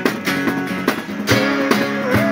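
Several acoustic guitars playing a rock song together, strummed in a steady rhythm with sharp strokes.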